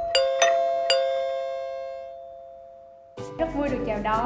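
Intro chime sound effect: three bright bell-like notes struck in quick succession in the first second, ringing on and fading away over about two seconds. Near the end a voice starts over background music.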